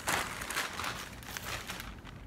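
Plastic bag crinkling and rustling as it is handled, with irregular crackles, stopping just before the end.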